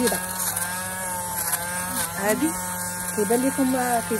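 Electric lint remover (fabric shaver) running with a steady buzzing motor hum as it is passed over a pilled knit sweater sleeve, shaving off the pills.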